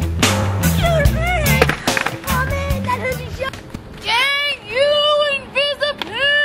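Skateboards rolling and clattering under rock music for the first couple of seconds; then, from about four seconds in, a person yelling in a series of long, high cries.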